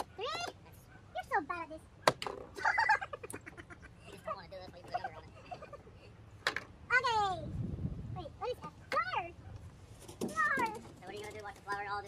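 A young child's voice making short high squeals and babbling cries that slide down in pitch, with a couple of sharp knocks near the start.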